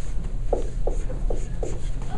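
Dry-erase marker writing on a whiteboard: four short squeaks, the first about half a second in, roughly 0.4 s apart, over a steady low hum.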